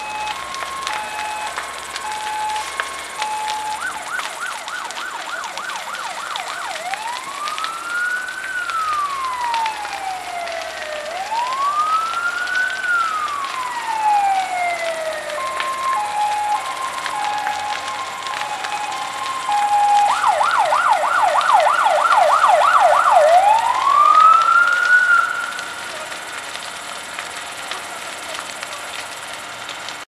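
Emergency vehicle siren cycling through its patterns: a two-tone hi-lo, a fast yelp of about five warbles a second, and a slow wail rising and falling every few seconds, then the same cycle again. It is loudest about twenty to twenty-five seconds in and drops off after that.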